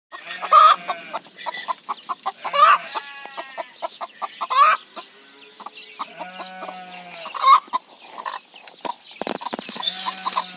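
Mother hen clucking to the guinea fowl keets she is raising: a steady run of short clucks with a few drawn-out calls, and loud, sharp calls about every two seconds.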